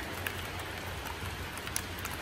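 Steady rain falling, an even hiss with a couple of faint ticks.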